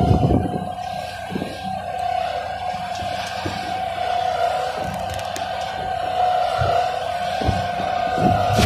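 Piling machinery running: a steady high whine that wavers slightly, with irregular low knocks underneath.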